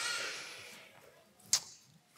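A breath into a headset microphone, a hiss that fades within about a second, then one sharp click about a second and a half in as a hand meets the lectern.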